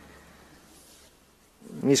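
Faint microphone room tone with a low hum that drops away to near silence, then a man's voice starts speaking near the end.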